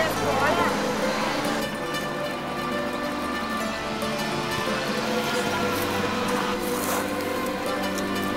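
Mandolin music with held, steady notes. Voices are heard in the first second before the music carries on alone.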